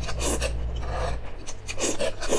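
Noodles being slurped up into the mouth in several short, noisy sucks.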